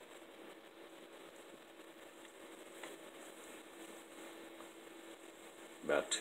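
A stainless pot of pork fat rendering into lard, bubbling and crackling faintly with a soft hiss, with a faint steady hum underneath. The fat is at about 250 °F and close to having enough of its water cooked out.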